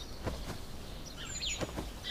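Faint birds chirping over a quiet outdoor background, with a few soft rustles and taps of clothing as people kneel.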